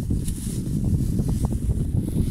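Wind buffeting the microphone: a continuous, uneven low rumble.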